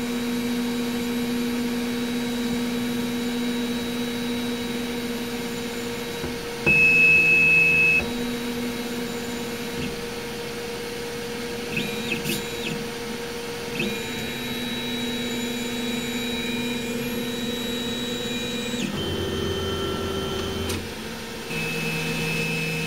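Dremel DigiLab 3D45 3D printer running its automatic bed-leveling check: the motors moving the build platform and print head whine in steady tones that change pitch in steps as the axes change speed. There is a louder, higher-pitched stretch about seven seconds in, a few light clicks around the middle, and a lower tone near the end.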